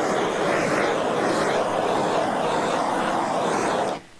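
Handheld gas torch flame burning with a steady hiss, played over wet epoxy to heat it and set the metallic gold lines moving; it cuts off suddenly just before the end.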